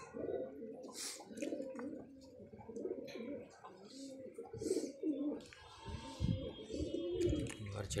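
Domestic pigeons cooing, several birds in a flock with overlapping low, rolling coos.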